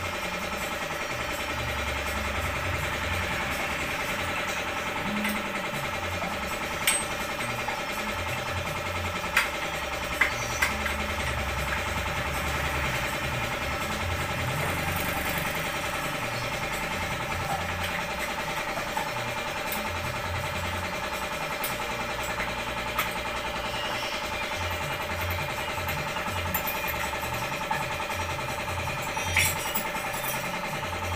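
Steady mechanical hum of workshop machinery, with a few sharp metallic clinks as the motorcycle's front fork tubes and steering head are handled and fitted.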